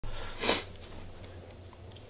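A single short sniff about half a second in, over a faint steady low hum of room tone.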